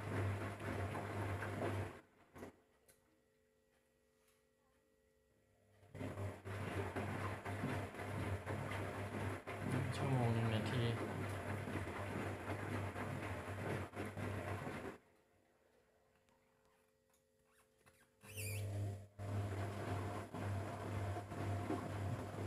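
Front-loading washing machine (Electrolux EWF10741) tumbling its drum in the wash cycle: the motor hums and runs for several seconds, stops twice for about three to four seconds with near silence, and starts again each time.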